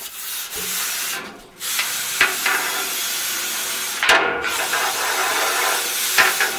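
Steady rasping scrape of a cleaning rod working inside a boiler's fire tubes, clearing soot and scale. It comes in long stretches, broken briefly about a second and a half in and again about four seconds in.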